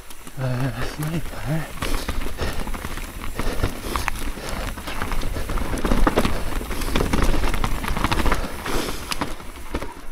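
Mountain bike descending a rough, rocky forest trail: tyres rolling over dirt and stone with frequent knocks and rattles from the bike, over a steady low rumble. A short grunt from the rider in the first couple of seconds.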